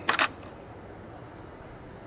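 ATV ignition key switch turned on: a quick double click at the very start, switching power to the accessory circuit, followed by low background hiss.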